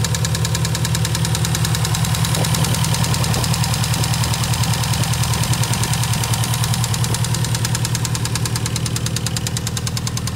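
An engine running steadily at idle, with a rapid, even pulse.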